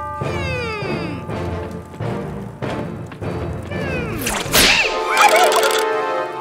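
Cartoon whip sound effects: a loud whoosh and crack of a many-tailed whip about four and a half seconds in, then a wavering pitched sound. Comic falling glide effects come near the start, over background cartoon music.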